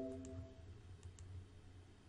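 Faint computer mouse clicks, a few in the first second or so, while the tail of a computer alert chime dies away in the first half-second.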